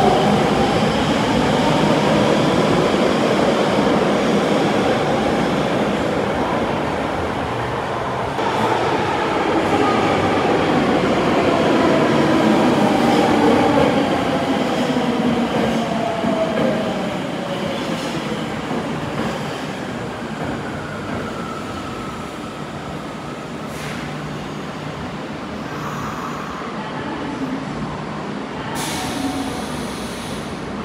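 Tokyo Metro Marunouchi Line 02-series subway trains running through an underground station: rumble of wheels on rail with the motors' whine gliding up and down in pitch. Loudest in the first half, then fading to a lower running noise.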